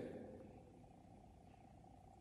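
The last of a man's speaking voice dies away in the first half second, then near silence: faint room tone.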